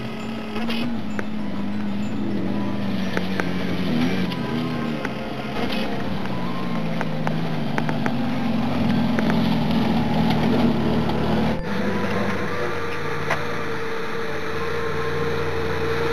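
Jeep Wrangler engine running at low revs as it crawls up a rocky trail, with brief rises in revs and scattered clicks and crunches of rock under the tyres. A steady whine joins in about three quarters of the way through.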